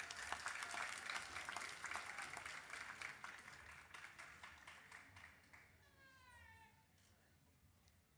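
Audience applauding for a graduate crossing the stage, the clapping thinning out and fading away over about five seconds. A brief high-pitched call rises out of the quiet about six seconds in.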